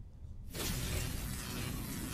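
Edited-in outro sound effect: a sudden loud rush of noise begins about half a second in and carries on, with faint flickers through it.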